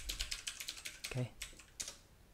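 Typing on a computer keyboard: a fast run of keystrokes through the first second, then a couple more keystrokes near the end.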